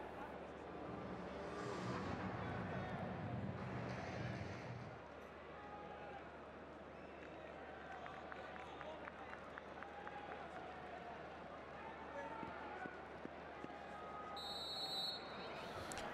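Faint stadium crowd ambience: a distant murmur of voices from the stands, with a short, high referee's whistle near the end for the kick-off.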